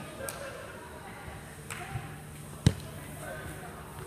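A futsal ball hit sharply once, about two and a half seconds in, with a few lighter knocks before it.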